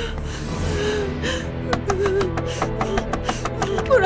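Background music with long held tones, over a woman's breathless gasps and wavering, whimpering cries as she runs.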